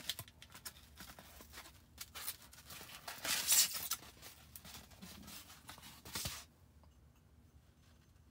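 A cardboard box and its foam packing insert rustling and scraping as a ceramic mug is pulled out of it by hand, loudest about three and a half seconds in.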